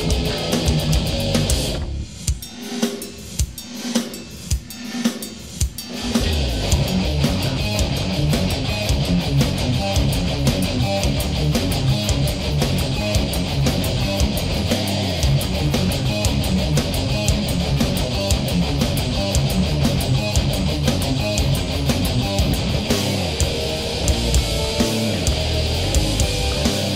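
Death/thrash metal band playing an instrumental passage: distorted electric guitars, bass and drum kit. About two seconds in the band drops to a break of spaced accented hits, then comes back in full around six seconds.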